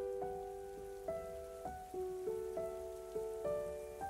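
Soft solo piano notes played in a slow, repeating broken-chord pattern, each note ringing and fading before the next, over a faint steady hiss: the quiet instrumental opening of a stage-musical ballad.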